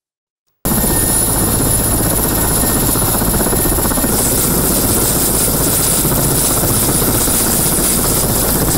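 Mi-8MTV-1 helicopter's twin turbine engines running on the ground: a loud, steady noise with a thin high whine. It starts abruptly about half a second in.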